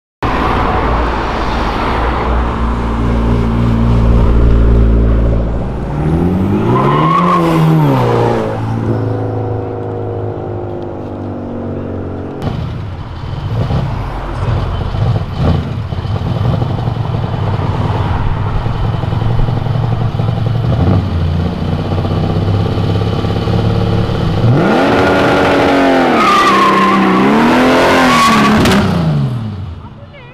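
Car engines revving hard on the street: first a BMW sedan, with a sharp rise and fall in revs a few seconds in, then a turbocharged Chevrolet Opala, whose revs climb and fall again in a longer burst near the end as it pulls away.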